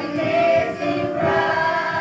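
Small church choir of women and a boy singing a gospel song together, holding long notes that change pitch every second or so.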